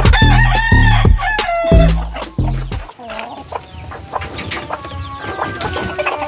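Gamefowl rooster crowing once, a single arched call about a second long, right at the start. Background music with a heavy bass beat plays under it; the beat drops out about three seconds in, leaving quieter melody notes.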